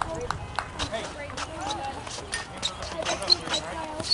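Indistinct voices of players and spectators talking and calling out around a youth baseball field, with scattered sharp clicks and taps.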